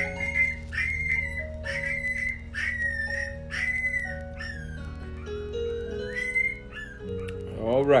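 Newborn puppies whining and crying in a string of high-pitched calls, each rising then falling, about one every half second.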